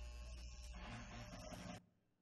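Electric hair clippers buzzing faintly as they cut hair, with a steady low hum and a rasping sound, cutting off abruptly near the end.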